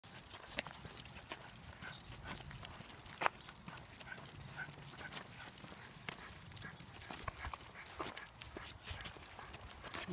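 Four basenjis walking on leashes on pavement: irregular clicking and tapping of claws and footsteps, with faint jingling of collar tags.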